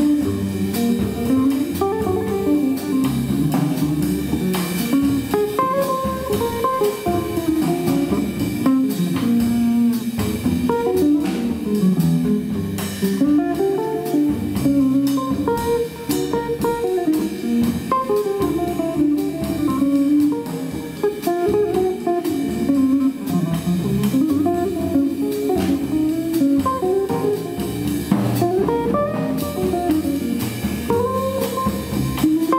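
Live small-group jazz: a guitar plays a flowing line of single notes over plucked double bass, with light drums behind.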